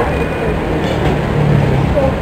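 Steady low engine rumble of a heavy vehicle in street traffic.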